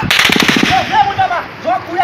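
A short, rapid burst of automatic rifle fire near the start, followed by a man's voice shouting.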